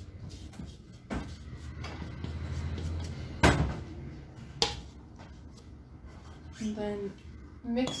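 Cookie dough and a mixing bowl being handled on a kitchen counter: a low rumble of handling with sharp knocks, the loudest about three and a half seconds in and another a second later. A short bit of voice comes near the end.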